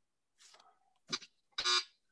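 Brief electronic buzz from an online quiz-game board near the end, as a contestant buzzes in on the clue; a shorter sound comes about a second in.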